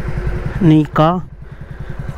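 A motorcycle engine idling with a steady, evenly pulsing low rumble.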